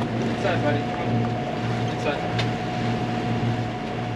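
Sailboat under way at sea: a steady low drone with an even pulse and a constant hum from the boat, over the rush of wind and water.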